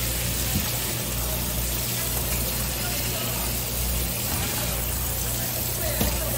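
Tap water spraying steadily onto a flatfish and a plastic cutting board, a constant hiss, over a low steady hum.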